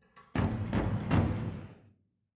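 Gunfire on a tank gunnery range: a sudden loud report followed by two more in quick succession, about 0.4 s apart, with a rumble that dies away about a second and a half later.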